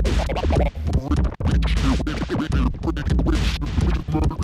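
Vinyl record being scratched by hand on a DJ turntable: choppy, stop-start strokes over deep bass, with brief cut-outs about one second in.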